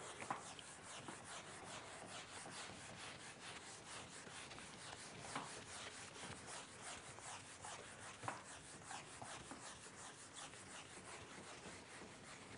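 Whiteboard eraser rubbing back and forth across a whiteboard: a faint, steady run of quick scrubbing strokes as the board is wiped clean.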